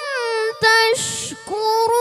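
A boy's voice reciting the Quran in the melodic tilawah style, with held notes that waver in pitch. A short hiss comes about a second in, then a long, steady held note from about halfway.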